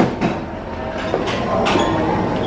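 Busy coffee-shop din: a steady wash of crowd noise with a few sharp knocks and clatters.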